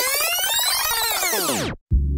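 Electronic synthesizer sweep whose pitch rises and then falls back, cutting off suddenly near the end.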